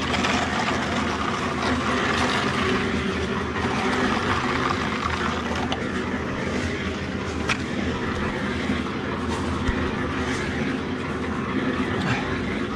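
A machine running steadily nearby, a constant low hum with a rushing noise over it, and a couple of faint clicks around the middle.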